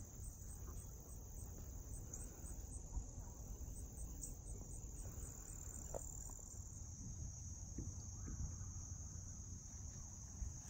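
Faint outdoor insect chorus: a steady, high-pitched trill, typical of crickets, over a low rumble.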